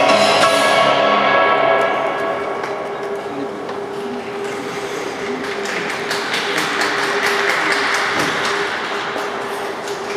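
Figure-skating program music fades out over the first two seconds. Audience applause then builds from about five seconds in, with a single steady tone held underneath.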